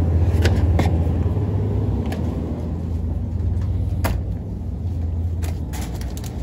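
Steady low rumble, with a few sharp clicks and knocks scattered through it.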